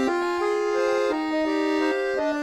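Chromatic button accordion playing alone: a slow melody over sustained chords, the notes changing every few tenths of a second.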